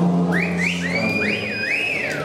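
A concert-goer whistling loudly, a string of quick rising whistles, each sweeping up and levelling off, starting a moment in, over a low note held by the band.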